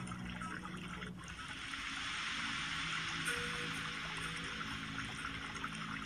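Soft background music of faint, sustained low tones under a steady rushing hiss, which swells about a second in and then holds.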